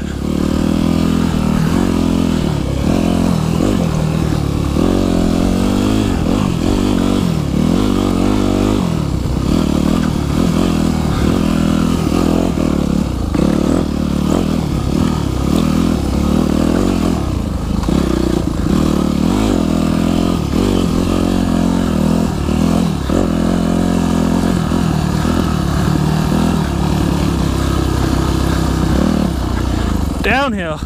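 Yamaha YZ250F's 250 cc four-stroke single-cylinder engine running on a trail ride, its revs rising and falling over and over.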